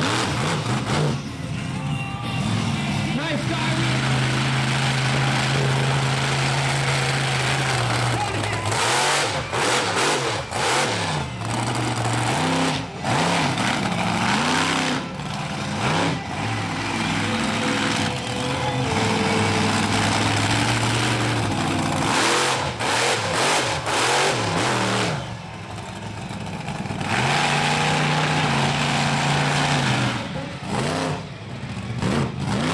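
Monster truck engines running hard, revving up and down in long swells with the throttle held open for stretches of several seconds. Near the end the sound drops away briefly before picking up again.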